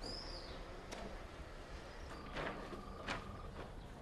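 Quiet outdoor ambience with a short bird chirp at the start. Later come a few sharp clicks and a brief steady high tone lasting about a second and a half.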